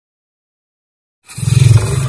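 Silence, then a little over a second in, a loud, deep intro sound effect with a hissing top comes in: the sting for an animated channel logo.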